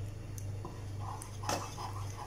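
A wooden spoon stirring thickened custard in a saucepan: soft, quick repeated strokes, several a second, with one sharp knock of the spoon against the pan about three quarters of the way through, over a steady low hum.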